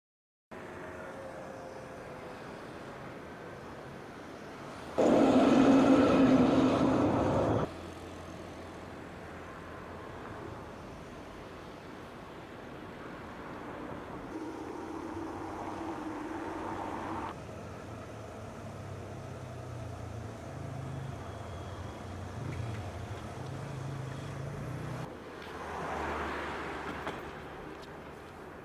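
City street traffic, with a tram, crossing a bridge: a steady background of vehicles, louder for about three seconds around five seconds in, that louder passage starting and stopping abruptly.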